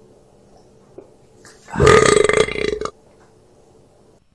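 Burp sound effect: one long, loud burp about two seconds in, lasting about a second, over a faint steady hum.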